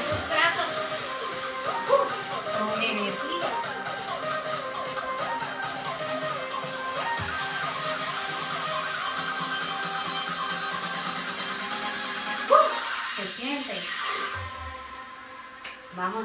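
Background music with a voice in it, running steadily and then dropping away over the last two seconds.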